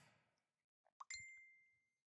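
Faint mouse-click sound effect, then about a second in another click followed by a high, bell-like notification ding that rings and fades over about a second: the sound effects of a subscribe-button animation with its notification bell being pressed.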